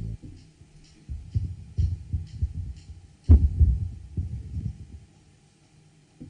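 Irregular low thumps and rumbles picked up by stage microphones, the loudest and sharpest about three seconds in, dying away near the end: microphones being bumped or handled.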